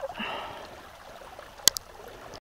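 Water trickling at the edge of a shallow pond, with two sharp clicks in quick succession near the end.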